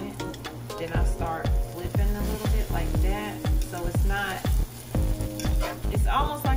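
Eggs with sliced jalapeños sizzling in a frying pan, under background music. About a second in, the music's heavy beat comes in: deep bass notes that drop in pitch, about two a second.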